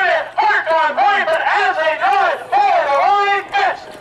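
A man's voice calling a harness race fast and without pause through the stretch drive.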